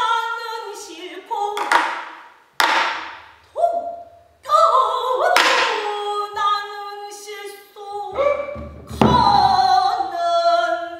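Female pansori singing, with held, bending notes broken by short pauses. About three sharp strokes of the buk barrel drum fall between the phrases, the first a little under two seconds in.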